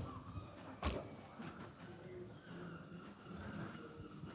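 A single sharp knock about a second in, then faint, indistinct voices and room noise.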